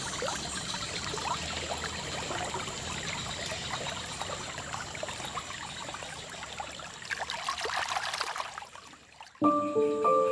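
Aquarium water splashing and trickling as a hand works among submerged stem plants, dying away near the end. In the last half second a plinking mallet-percussion melody starts.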